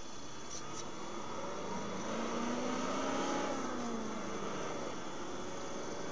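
Vehicle engine heard from inside a car cabin, its pitch climbing and then falling away over a few seconds, loudest mid-way, over steady road noise and a faint constant high whine.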